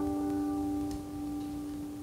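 Final strummed chord on an acoustic guitar ringing out and fading away; the higher notes die away first, leaving one low note sustaining.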